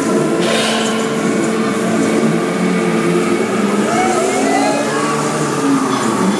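A fairground ride running, its machinery giving a loud, steady hum with held tones, over general funfair din; a few wavering tones rise and fall about four seconds in.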